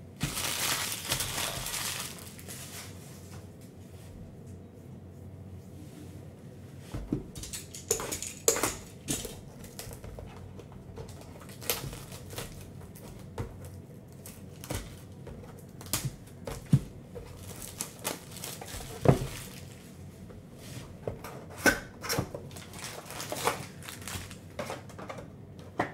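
Clear plastic shrink wrap being torn and crinkled off a sealed cardboard trading-card hobby box, then the box lid pulled open. It starts with a burst of rustling in the first two seconds, followed by scattered sharp crinkles and taps.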